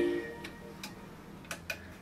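A song's last notes stop just after the start, then quiet room tone with four short, sharp clicks: handling noise from a handheld karaoke microphone being picked up.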